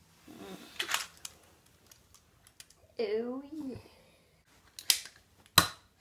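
Small plastic clicks from a child handling a toy foam-dart blaster, with two sharp clicks near the end as it is dry-fired: it is not loaded. A child's voice makes a short wordless sound about halfway.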